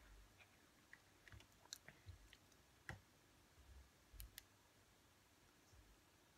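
Near silence: room tone with a few faint, short clicks scattered through the first four or five seconds.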